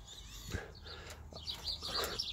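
Faint birds chirping in the background, short high chirps mostly in the second half, with a single light click about half a second in.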